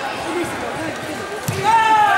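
Murmur of voices across a large sports hall. About one and a half seconds in comes a sharp thump from a strike or step on the foam mat, then a loud shout falling in pitch: a karate fighter's kiai.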